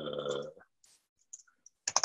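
Typing on a computer keyboard: a few sparse key clicks, the loudest a quick pair near the end.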